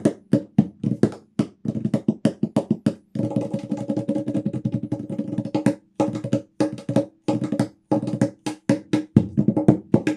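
Hybrid steel tongue drum played with the hands, quick rhythmic slaps and taps on its flat playing side. A dense run of fast strokes with notes ringing on comes in about three seconds in, then breaks off briefly before the strokes resume.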